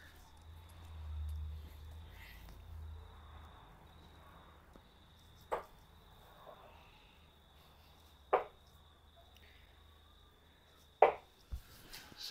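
Three steel-tip darts hitting a Winmau Blade 5 bristle dartboard, one sharp thud each, about three seconds apart. Each hit is louder than the one before.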